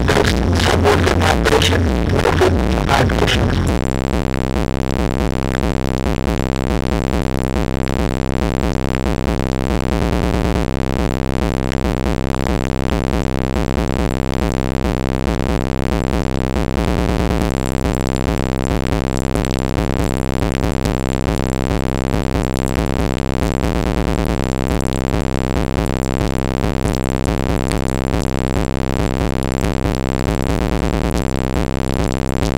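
Bass-heavy electronic music played very loud through a car audio system of three DC Audio Level 5 18-inch subwoofers, heard with the car door open. It is harsh and crackling for the first three seconds or so, then settles into a steady, repeating line of deep bass notes that moves enough air to blow hair around.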